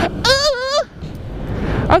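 A person's wordless "ooh" hoot, one wavering call about half a second long. It is followed by rushing wind and ride noise that grows louder toward the end.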